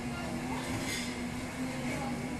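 Coffee-shop background ambience: a steady low hum and room noise with a brief sharp sound about a second in.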